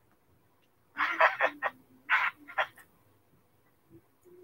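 A person laughing in a few short bursts, starting about a second in and again around two seconds in, in reaction to a joke.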